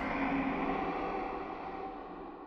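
Synthesized sound-effect tone from a channel logo sting, a few steady pitches ringing out together and slowly fading.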